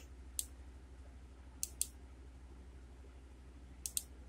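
Computer mouse clicking five times: a single click, then a pair about a second and a half in, then a quick pair just before the end, over a faint steady low hum.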